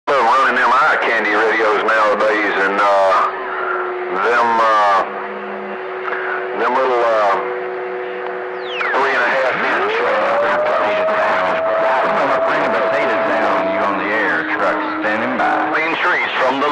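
CB radio receiver on channel 28 picking up garbled, unintelligible voices through static, with steady heterodyne tones under them. About nine seconds in, a whistle glides up in pitch and holds for about four seconds.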